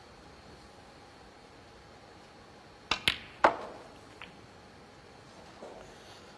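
Snooker cue striking the cue ball, then about half a second later a louder, sharp click as the cue ball hits the brown, followed by a faint tap a moment after; the brown is potted.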